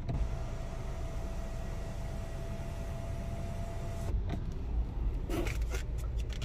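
Electric motor of the Suzuki Vitara's panoramic sunroof running with a steady whine for about four seconds and then cutting off, over a low rumble. A few light knocks follow near the end.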